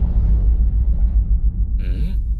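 Dramatic soundtrack sting: the tail of a sudden boom, fading into a steady, loud, deep rumbling drone.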